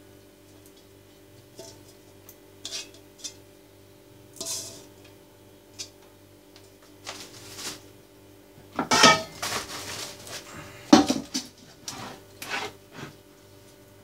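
Kitchen clatter: a large stainless steel stockpot, a wooden cutting board and metal utensils knocked and set down, scattered single knocks with louder bursts of clattering about nine and eleven seconds in.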